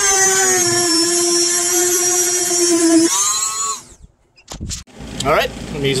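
Corded rotary tool cutting a circular access hole in a fiberglass boat's engine well, running with a steady high whine. A little after three seconds the pitch rises as the tool comes free and it winds down to a stop.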